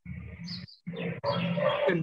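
A person's voice: a low, rough vocal sound lasting under a second, then indistinct speech that runs on into the next words.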